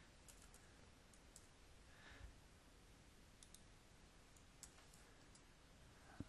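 Near silence, with scattered faint clicks from a computer mouse and keyboard as a spreadsheet formula is entered.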